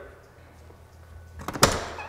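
Ambulance rear box door being unlatched and pulled open: a few sharp latch clicks about one and a half seconds in, followed by the door swinging.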